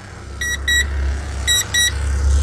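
Electronic chime beeping in quick pairs, about one pair a second, over a steady low rumble.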